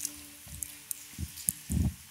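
Soft footsteps of a man walking across a stage, heard as a few low thuds, the loudest near the end, over two faint sustained musical notes.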